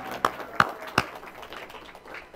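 A few sharp hand claps at about three a second, slowing and stopping about a second in, as a held keyboard note fades out.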